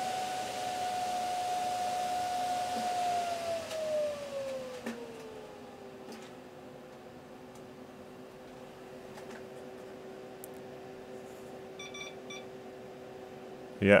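Server cooling fans spinning at full speed just after power-on with a steady whine, then slowing over about three seconds to a lower, steady pitch as the board's fan control takes over during boot. A few faint short beeps near the end.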